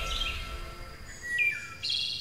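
Birds chirping and tweeting: a series of short, high chirps, the loudest about a second and a half in.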